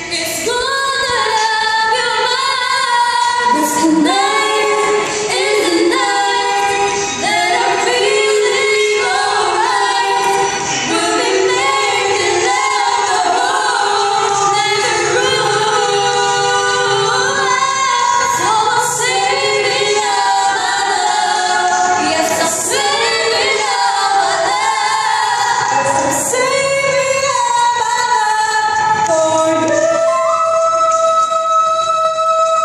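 Two female voices singing a duet together, with sustained, bending sung notes throughout.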